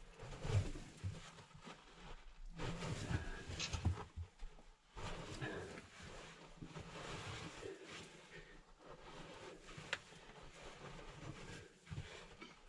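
Hands scraping and shifting loose, sandy cave dirt, with clothing rustling against rock as the digger works in a tight crawlway, and a sharp click about ten seconds in.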